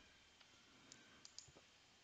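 Near silence with a few faint, brief computer-mouse clicks.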